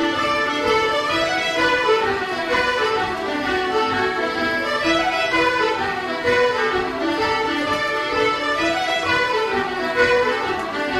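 Irish traditional music group playing a tune together: fiddles, flutes, concertinas, harps and an accordion, with a cello underneath.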